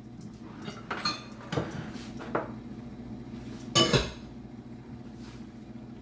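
Kitchen clatter: a few separate clinks and knocks of dishes and utensils being handled and set down on a countertop. The loudest is a sharp clank a little under four seconds in.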